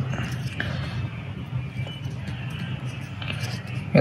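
Faint handling noise from a plastic GoPro mount and its carry case: a few light clicks and rustles over a steady low hum.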